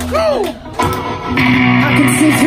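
Amplified electric guitars playing through stage amps: a note swoops up and down at the start, then after a brief drop, steady sustained notes ring out from about a second in.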